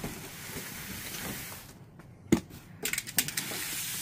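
Cardboard box being handled and cut into with a box cutter: a rustling, scraping noise, a short pause, then one sharp click about two seconds in and a few lighter clicks, with the rustling coming back near the end.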